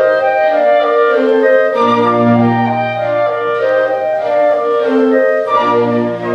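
Two solo flutes playing a melody of held notes together over an orchestral accompaniment, with a low bass line that drops out for stretches.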